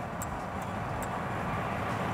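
Steady road and wind noise inside a car cabin at motorway speed, an even low rumble with a few faint ticks.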